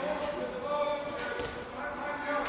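A handball bouncing twice on a sports-hall floor, about a second apart, with the bounces echoing. Spectators' voices carry on underneath.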